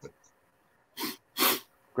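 Two short breathy bursts from a person a little after a second in, the second one sharper and hissier.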